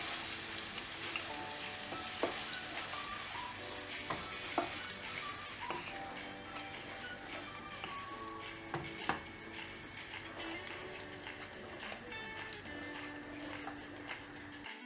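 Mushroom gravy sizzling in a nonstick pan while a wooden spatula stirs it, with a few short knocks of the spatula against the pan. Faint background music plays under it.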